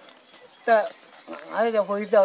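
A man speaking in short phrases, beginning a little under a second in after a brief lull.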